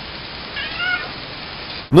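A cat meowing once, briefly, over a steady hiss, in the dull, narrow-band audio of a night-vision home camera.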